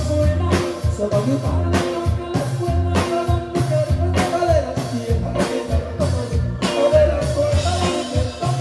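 Live band playing amplified through a stage sound system: electric guitar, keyboard and drum kit, the drums keeping a steady beat of about two strokes a second under a lead melody.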